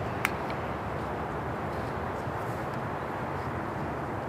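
Steady low background rumble with a single sharp click about a quarter second in.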